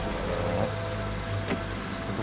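Car running, heard from inside the cabin as a steady low hum, with a single short click about one and a half seconds in.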